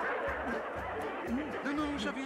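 Background music under voices, with light snickering laughter. A voice speaks in the second half.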